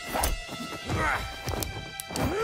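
Fight sound effects: a few sharp punches and thuds with short grunts, over background music with steady held notes.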